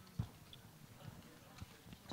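Faint scattered knocks and thumps from people moving about and microphones being handled, the clearest about a fifth of a second in, over quiet room tone.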